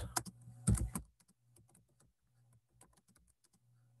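Typing on a computer keyboard: a run of quick, faint key clicks, with a louder stretch of sound in the first second.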